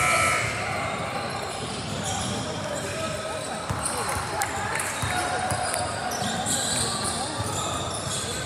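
Indistinct chatter from spectators echoing in a gymnasium, with a few sharp knocks of a basketball bouncing on the hardwood floor near the middle.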